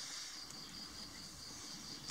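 Faint outdoor background with a steady, high-pitched insect drone.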